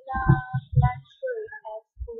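A young woman's voice in short sing-song phrases, some notes held and one gliding down, more like brief singing than plain talk.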